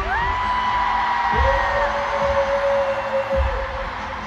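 Live pop concert audio: a voice holds two long notes, each sliding up into pitch, first a high one and then a lower one, over low thuds and crowd noise.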